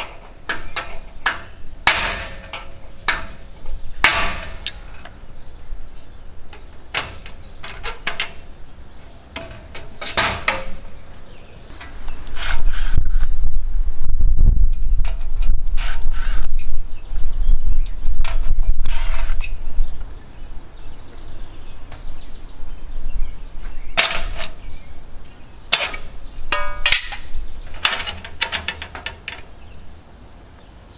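Steel server-rack parts being taken apart by hand: a string of irregular metal clanks and knocks from the brackets and rails, some with a short ring. From about 12 to 20 seconds in, a loud low rumble sits under the clanking.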